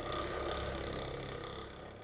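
Benchtop vortex mixer running with a small glass bottle pressed onto its rubber cup, a steady whirring hum as the liquid is mixed, fading out near the end.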